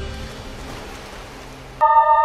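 Water splashing and spraying as the bald eagle pulls its catch from the surface, a soft even hiss under fading soundtrack music. Near the end a loud sustained chord of music starts abruptly.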